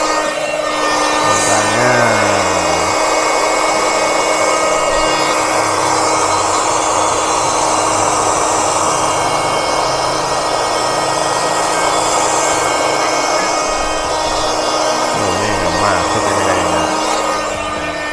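Small electric air pump running steadily while it inflates a vinyl inflatable pool toy: a constant hum under an even rush of air. Filling is slow.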